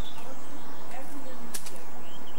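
Faint bird chirps over a steady hiss, and a single sharp clack about a second and a half in, as a stick falls onto the paved driveway.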